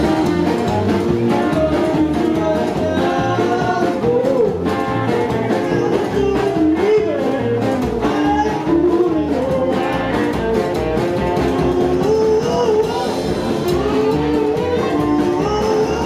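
Live rockabilly band playing: upright double bass, drum kit, hollow-body electric guitar and keyboard piano, with a man singing.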